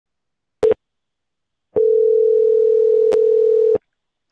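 Telephone line tones: a short beep, then one steady two-second tone of the same pitch, with a click partway through, as a phone call is being connected.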